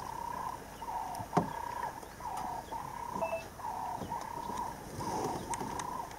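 A wild animal's call repeated steadily, about three calls every two seconds, each a short level note with a lower, slightly falling note beneath it. A single sharp knock comes about a second and a half in.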